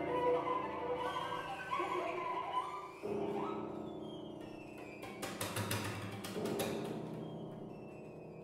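Cello and piano playing a contemporary classical piece: held notes that slowly fade, a fresh attack about three seconds in, then a quick run of sharp, scratchy strokes between about five and seven seconds.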